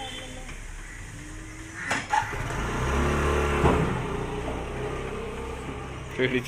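Road traffic: a motor vehicle passes, its engine growing loudest about three and a half seconds in and then fading.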